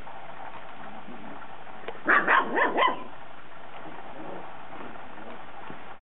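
A puppy yipping four times in quick succession, short high-pitched calls about two seconds in, over a steady low hiss.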